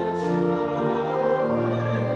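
Church choir singing in parts, holding long notes that step from one pitch to the next.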